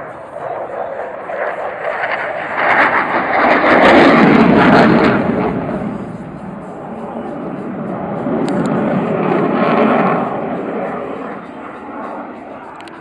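Military jet flying past overhead, its roar swelling to a peak about four seconds in, easing off, then rising again near the end.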